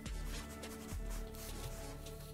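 Background instrumental music with sustained notes, over the faint scrubbing of a cloth being rubbed over a leather surface.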